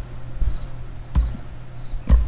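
A steady high-pitched whine over a low hum, with a couple of short clicks about half a second and a second in.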